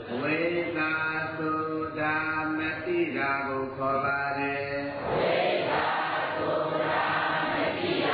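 Buddhist devotional chanting: a voice intoning long held notes, then a fuller, rougher sound from about five seconds in.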